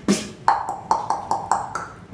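Human beatboxing solo. A sharp hit opens it, then from about half a second in a fast run of pitched, ping-like clicks comes at about five a second, each ringing briefly and sliding slightly down in pitch.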